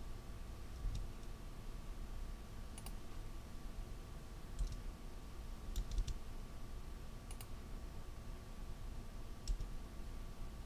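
Computer mouse clicks, single clicks every second or two with a quick cluster of three near the middle, over a faint steady background hum.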